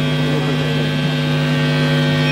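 Steady, loud electric buzz from distorted guitar amplifiers, a mains hum thick with overtones, between songs.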